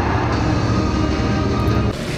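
Golf cart running along the course, a steady low rumble.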